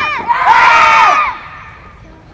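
Young taekwondo students shouting together in one loud, held kihap (martial-arts yell) lasting about a second, right after the falling tail of an earlier shout; it stops about two-thirds of the way through, leaving only faint movement sounds.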